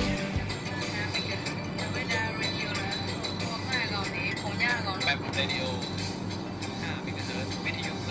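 Loud music cuts off at the start, leaving a quieter stretch of a steady low hum with faint background music and a faint voice.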